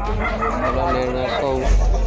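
Raised men's voices calling out in a crowd, over a low rumble on the phone microphone.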